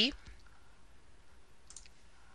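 A single computer mouse click, brief and sharp, about three-quarters of the way through, over faint room tone.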